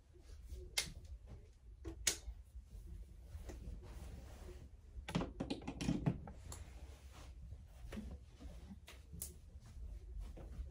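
Scattered light clicks and knocks of objects being handled, with a cluster of knocks about five to six seconds in, over a steady low hum.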